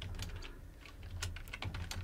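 Typing on a computer keyboard: a run of separate, irregularly spaced key clicks as a word is typed.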